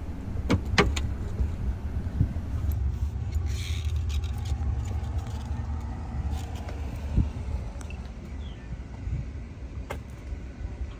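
Metal clinks and knocks from a fire-hose gated wye fitting and its metal couplings being handled, two sharp clicks close together near the start and a few lighter knocks later, over a steady low rumble.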